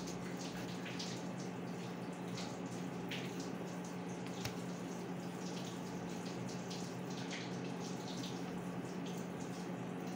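Thick cake batter pouring and being scraped out of a plastic blender jug with a spatula into a cake pan: small wet ticks and short scrapes. A steady low hum runs underneath.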